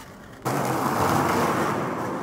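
Skateboard wheels rolling on a smooth concrete floor: a steady, loud rolling rumble that cuts in abruptly about half a second in.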